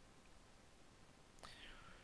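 Near silence: room tone, then a faint mouth click and a soft breath near the end.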